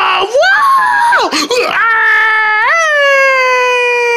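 A person's high-pitched voice making long, held vocal cries that slide up and down in pitch. The last one rises just before three seconds in and then holds, slowly falling.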